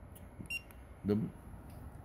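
A single short electronic beep from the Juki DDL-9000C industrial sewing machine's operation panel as a button is pressed to change a setting.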